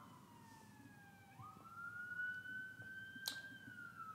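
Faint wailing tone in the background, its pitch sliding down, then jumping up and rising slowly. A single sharp click comes a little past three seconds in.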